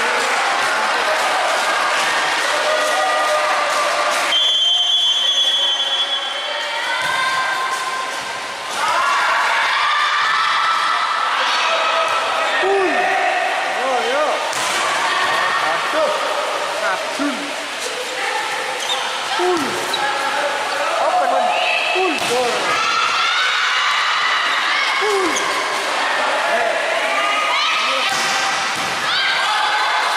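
Indoor volleyball rally: the ball is struck and bounces, over constant shouting and calls from players and onlookers. A referee's whistle blows once, held for about a second and a half, about four seconds in.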